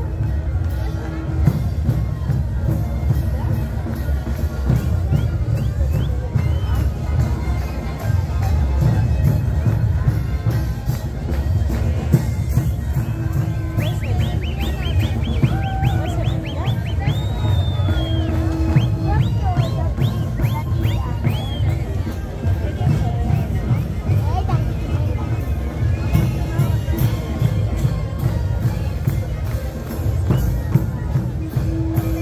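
Kantus ensemble playing live: Andean panpipes over deep drums, with crowd chatter around it.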